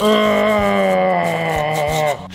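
A karambit knife blade scraped along the mortar joint of a brick wall: one steady, pitched scraping screech lasting almost two seconds, dipping a little in pitch as it ends.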